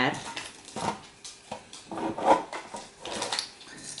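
Irregular clicks and clatter of a box and small objects being handled on a tabletop.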